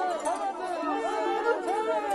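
Many voices talking at once in a low crowd murmur, with no single speaker standing out.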